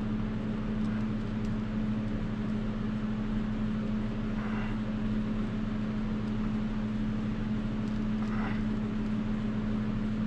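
A steady, even machine hum with one strong low tone. Two faint, brief rustling sounds come about halfway through and again near the end.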